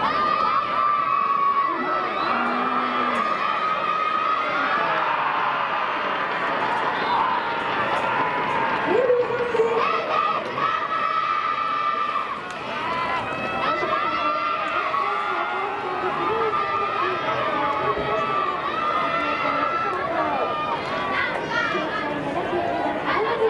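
Football players and sideline spectators shouting and cheering together, many overlapping voices with long held shouts.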